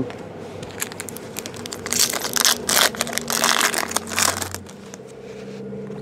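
Crinkling and tearing of a foil trading-card pack wrapper being handled and opened, a burst of quick crackles in the middle of the stretch that then dies down.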